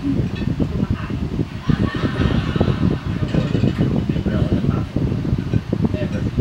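Muffled, indistinct voices from a TV sitcom scene, with no clear words.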